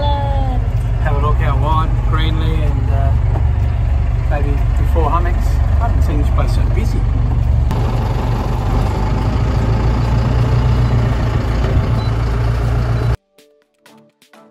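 A boat's engine running under way, heard as a loud, steady low rumble from inside the cabin. The rumble cuts off abruptly near the end.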